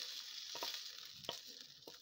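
Hot pan-fried meat pieces sizzling faintly as a wooden spoon scrapes them from a coated frying pan into a stainless steel bowl of pasta salad, with a few light knocks of the spoon. The sizzle fades as the pan empties.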